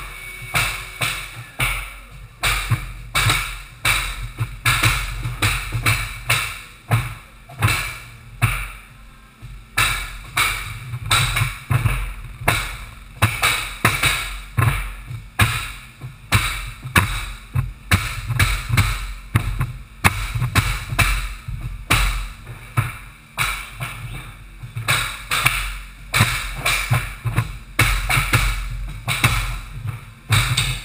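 Pneumatic flooring nailers being struck over and over with long-handled mallets, sharp blows about twice a second, driving cleats through unfinished hardwood boards. Music plays along with them.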